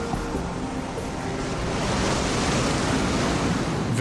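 Surf washing in: a rushing wave noise that swells up and is loudest through the second half. Soft background music with held notes lies underneath.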